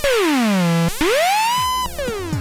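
Eurorack modular synthesizer voice with a buzzy, many-overtoned tone sliding in pitch: one note glides down, then a new note starts about a second in and glides up, levelling off near the end. The pitch follows a hand-turned control voltage, and each new note is set off by a gate that the Wiretap module sends when it detects the voltage changing.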